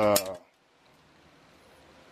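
A man's drawn-out 'uh' in the first half-second, then near silence: faint room tone.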